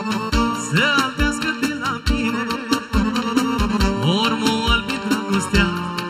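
Live Romanian folk party band playing an instrumental passage, with a steady drum beat about twice a second under a melody line that slides up and down.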